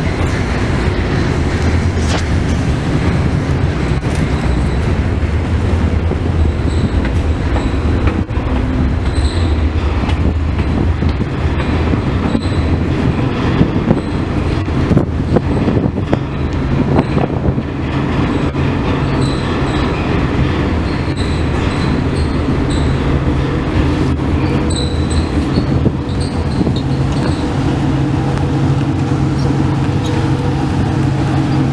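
Ferry under way: a steady low rumble and hum from the ship's engines carried through the deck and cabin, over a continuous rushing wash. Brief high-pitched squeaks come and go from about a quarter of the way in.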